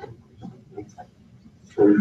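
Speech only: faint, distant, muffled talk from off the microphone, then a man starts speaking close to the microphone near the end.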